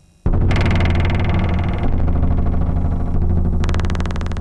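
Loud electronic music with a deep, steady low hum under a dense, buzzy synthesized texture, starting suddenly about a quarter second in after near-quiet. A bright, gritty hiss layer joins near the end.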